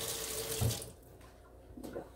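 Water running briefly, stopping about a second in, with a soft knock just before it stops.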